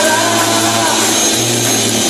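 Live rock band playing loud: electric guitar, electric bass and drum kit, the bass holding low notes under a dense, noisy wash of guitar and cymbals.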